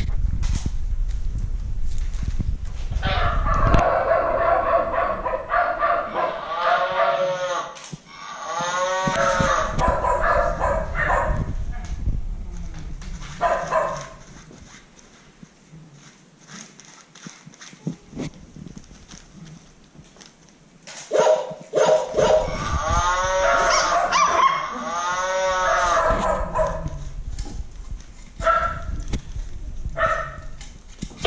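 Children's electronic musical floor mat set off by puppies' paws, playing recorded animal sounds and tones in two long spells with a quieter gap between.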